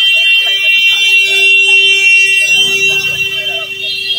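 A loud, steady horn tone held in one long blast, drowning out the voices underneath and easing slightly near the end.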